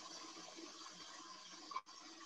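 Stand mixer running faintly, its beater creaming butter and powdered sugar in a steel bowl: a low, steady hum that briefly drops out near the end.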